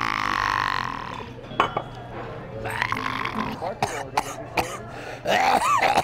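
A man's long, loud belch, lasting about a second and a half, that fades out about a second in.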